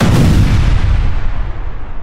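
A deep cinematic boom sound effect: one sudden hit that tails off slowly, its high end fading first.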